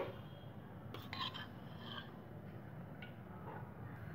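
Faint steady hiss with a few light clinks about a second in, from a spoon against a nonstick frying pan as cooking oil is spooned in.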